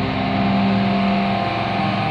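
Doom metal with heavily distorted electric guitars holding a long, sustained chord. The low rumble thins out at the start.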